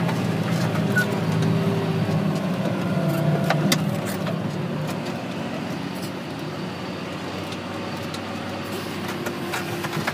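John Deere tractor's diesel engine running steadily under load, heard from inside the cab, while it pulls a Simba X-Press disc cultivator through soil. The engine sound eases off a little about halfway through, with a few light rattles and clicks from the cab.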